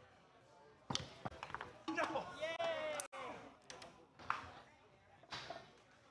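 Foosball play: sharp knocks of the hard ball struck by the plastic men and hitting the table, coming in a quick flurry about a second in and then singly near the end. A wordless voice calls out in the middle.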